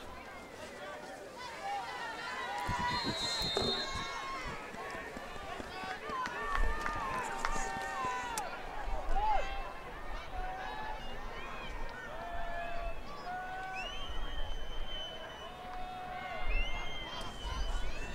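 Football stadium crowd ambience: scattered shouts and calls from the stands and the field, with a short high whistle about three seconds in.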